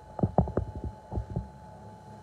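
An irregular run of about eight dull, low thumps in the first second and a half, over a steady faint hum.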